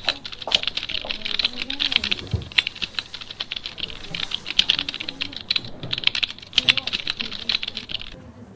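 Fast typing on a computer keyboard: a dense, irregular run of key clicks.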